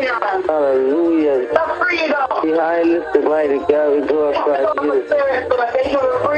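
One voice speaking continuously in a drawn-out, chant-like way, with some syllables held at a steady pitch.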